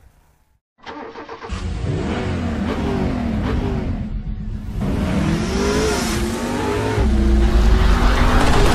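Car engine sound effect: after a brief silence, an engine starts up about a second in and revs, its pitch sweeping up and down, growing louder with a heavier low rumble near the end.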